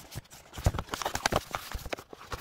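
Cardboard box being handled and opened by hand: a quick, irregular run of taps, clicks and scrapes as the flap is lifted.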